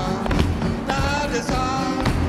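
Live flamenco-style music: acoustic guitar and a voice holding sung notes, with dancers' feet stamping sharply on a wooden floor several times.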